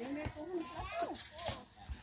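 Indistinct voices chattering and calling out, with a light clink of a utensil on a plate about one and a half seconds in.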